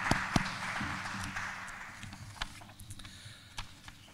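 Scattered applause from a small audience of about thirty, thinning out and fading over the first two seconds, with only a few isolated claps or taps after that.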